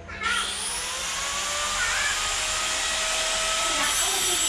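A motor-driven machine switches on abruptly about a quarter second in and runs steadily with a loud rushing hiss and a faint whine that rises slightly as it spins up.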